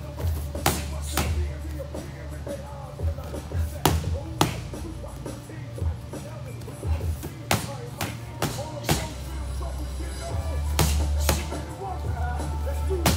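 Gloved punches smacking into handheld Thai pads, about ten sharp hits spread through, often in quick pairs, over background music with a heavy bass line.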